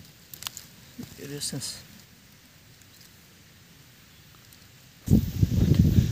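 A few light rustles and clicks, then about five seconds in a sudden loud low rumble of wind buffeting the phone's microphone.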